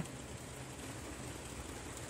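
Quiet, steady low hum of background noise inside a parked van's cab, with no distinct events.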